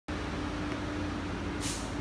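Steady background noise with a low hum and a faint steady tone, like distant traffic or a motor. A short high hiss comes about a second and a half in.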